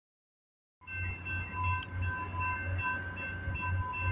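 Railroad grade-crossing warning bell ringing repeatedly, starting about a second in, with a pulsing low hum beneath it.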